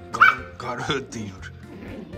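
Pomeranian giving two short, high-pitched yips in the first second while tugging and wrestling a plush toy in play, the first one the loudest.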